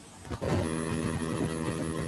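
A steady engine hum, like a motor vehicle running at idle, picked up through a student's microphone on a video call; it starts suddenly about half a second in and holds an even pitch.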